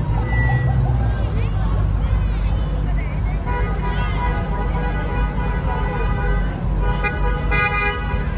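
Vehicle horns sounding in a slow parade: a long held honk from about the middle, then several short honks near the end, over a steady engine rumble, with people calling out and shouting.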